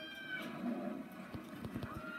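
Film soundtrack playing from a television: a high, drawn-out cry that ends about half a second in, then a low, animal-like sound. Near the end come a few low bumps from the phone being handled.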